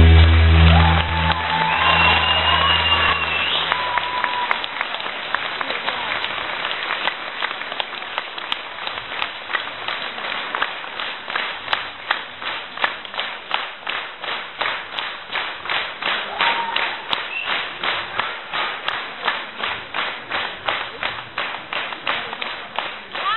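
An audience applauding and cheering as the music fades out in the first few seconds. The applause then settles into rhythmic clapping in unison, about two claps a second.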